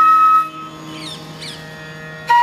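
Flute in a piece of Indian classical music holds a long note that ends about half a second in, over a low steady drone. A quieter gap follows, with the drone going on and faint wavering high squeaks about a second in.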